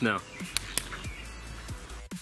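Background electronic music under a steady noisy hiss, with two sharp clicks a little over half a second in.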